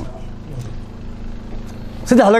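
A steady low hum, with faint rustling and small knocks as a clip-on lavalier microphone is fastened to a suit jacket.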